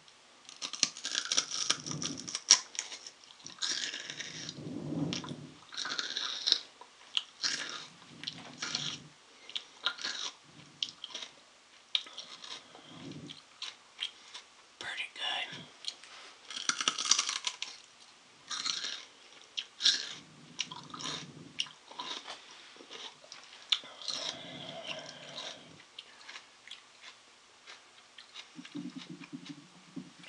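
Close-up crunching and chewing of a crisp raw green plant stalk, bitten and chewed in irregular crunches, one every second or so.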